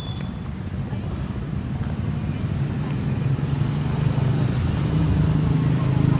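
A small car's engine drawing closer and passing alongside, growing steadily louder over a low road rumble.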